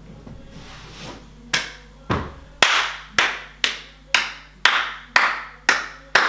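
Hands clapping in a steady beat, a little under two claps a second, starting about a second and a half in.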